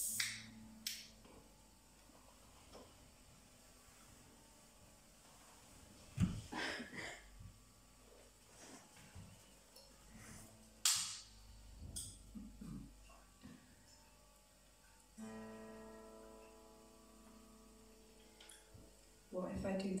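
Quiet room with scattered knocks and handling clicks. About fifteen seconds in, a guitar chord rings out and is held steadily for several seconds.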